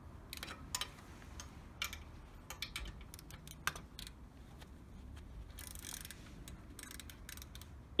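Faint, irregular metallic clicks of a torque wrench and socket working the exhaust flange nuts, which are being snugged down in turn towards 14 Nm.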